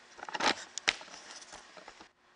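Handling noise of a camera being moved and set in place: a few short, light clicks and knocks, the sharpest about half a second and just under a second in.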